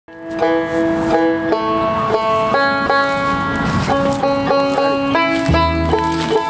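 Five-string banjo picking a slow run of single ringing notes; a low upright bass note comes in near the end.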